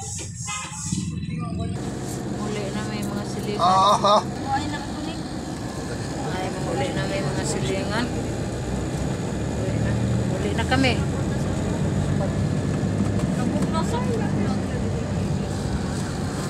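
A passenger van's engine running, heard as a steady low hum inside the cabin, with voices in the background. About four seconds in, a loud wavering high-pitched sound rings out twice in quick succession.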